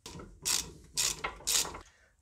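Hand ratchet with a T45 Torx bit clicking in short runs about twice a second as it tightens a front brake caliper guide bolt.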